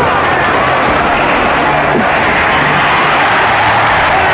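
Large arena crowd cheering, a loud and steady roar.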